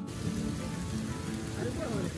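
Large clear plastic sheet crinkling and rustling as it is shaken out and spread. Voices start near the end.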